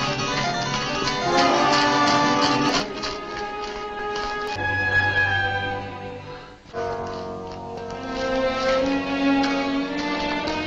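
Orchestral film score. A busy, layered passage gives way to a low held note, then the music drops away almost to nothing for a moment at about six and a half seconds before sustained chords come back in.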